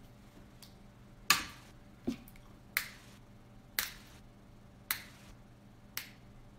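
About six sharp single clicks or snaps, roughly one a second with uneven gaps, tapped out by hand as a demonstration of rhythm.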